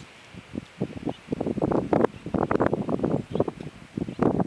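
Irregular rustling and crackling, like wind moving dry grass close to the microphone, growing from about half a second in and busiest through the middle.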